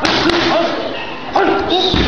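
Strikes landing on Muay Thai pads: a sharp smack at the start, another about a second and a half in and one at the end, each followed by a short vocal shout.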